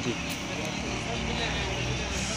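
Busy market background: a steady low hum under a general din, with faint chatter.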